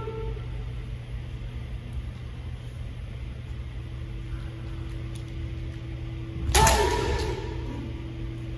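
A kendo strike about six and a half seconds in: a sharp crack of a bamboo shinai hitting armour, followed by a fencer's drawn-out kiai shout lasting about a second, over a steady low hum.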